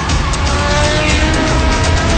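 Loud music with a steady beat, with a car's engine and squealing tyres laid over it as sound effects.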